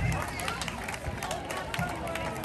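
A held low note from the band's amplified instruments cuts off just after the start. It leaves an outdoor crowd's talk and chatter, with scattered small clicks and knocks.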